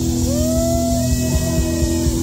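Loud live rock music from a band: steady held low notes, with a higher note that slides up about a quarter second in and holds.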